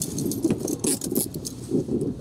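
Metal handcuffs clinking and rattling as they are locked onto a car's overhead grab handle: a quick run of light metallic clicks and chain jingles.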